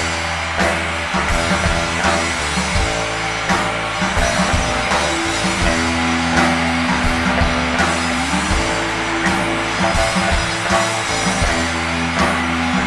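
Live rock band playing an instrumental passage on electric guitars, bass and drum kit. A long held note bends up in pitch about two-thirds of the way through.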